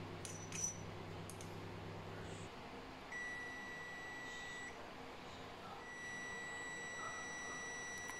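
Digital multimeter's continuity beeper giving a steady high beep, once for about a second and a half and then again without a break near the end, as the test probes bridge the CNC spindle motor's connector pins at a low winding resistance of about 1.4 ohms. Before the beeps there are a few faint clicks and a low hum that stops after about two and a half seconds.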